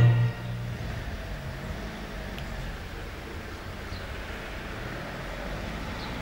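Choral music cuts off in the first moment. After that comes a steady, low outdoor background rumble with no distinct events.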